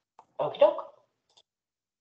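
A single short spoken word, preceded by a faint click, then dead silence.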